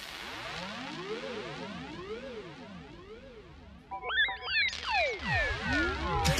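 Breakdown in an electronic dance track: the kick drum drops out, leaving quiet synth tones sweeping up and down in pitch. About four seconds in, louder swooping synth glides come in, with one long sweep falling from high to very low pitch.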